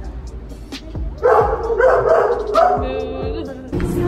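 Dogs barking and yipping, loudest through the middle, over background music, with a sudden change in the sound near the end.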